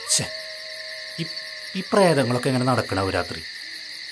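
Night ambience of insects chirping in a rapid, even pulse, with a loud hooting call from an owl about two seconds in that falls in pitch and lasts over a second.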